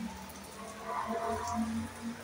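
Motorcycle passing in the street below, its engine swelling about a second in and falling away near the end, over the steady hiss of rain.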